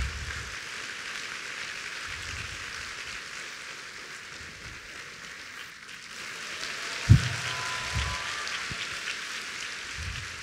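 Audience applauding steadily in a large hall. A single low thump sounds about seven seconds in.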